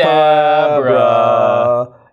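A man chanting a mock-magic 'hocus pocus' as a long, held sung note. The note dips slightly in pitch partway through and stops shortly before the end.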